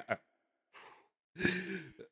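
The last of a man's laugh, then near silence, a faint breath just under a second in, and a breathy sigh of a man about a second and a half in.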